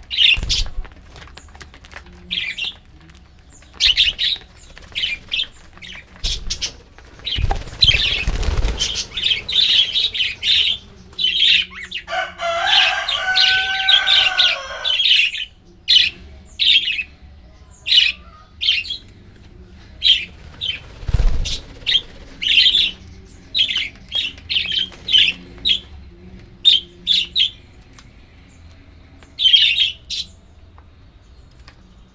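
A flock of budgerigars chirping: many short, high chirps one after another throughout. In the first half there is a flurry of wingbeats as the flock flies up from the feeding bowls. About halfway through there is a longer, lower call.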